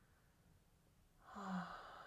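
A person breathing out audibly in a sigh-like exhale with a brief voiced start, beginning a little past halfway and trailing off.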